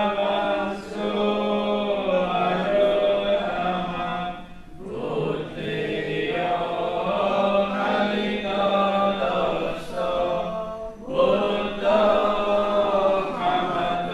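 Buddhist devotional chanting by a group of voices in unison, held on long, steady sung phrases with two brief pauses for breath.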